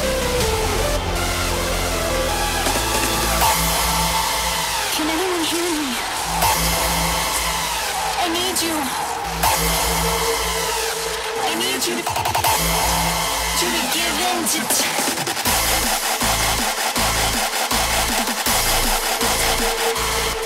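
Rawstyle hardstyle track playing in a DJ mix: a breakdown of sustained bass and swooping, screeching synth lines, then the distorted kick drum comes back in as a steady beat about three-quarters of the way through.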